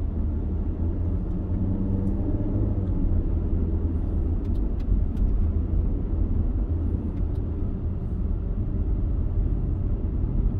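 Steady low rumble of a car driving slowly, heard from inside the cabin: engine and tyre noise. A few faint clicks come through around the middle.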